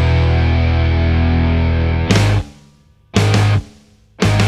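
Heavy rock music with distorted electric guitar, playing in stop-start riffs that break off abruptly about two seconds in and again near the end.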